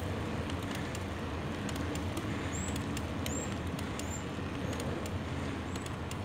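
Steady low drone of a vehicle riding up a paved road, with road and wind noise on the microphone. A few short high chirps sound near the middle.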